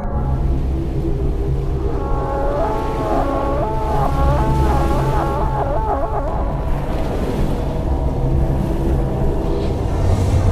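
Eerie soundtrack drone: a steady low rumble throughout, with a cluster of wavering, warbling tones from about two seconds in until nearly seven seconds.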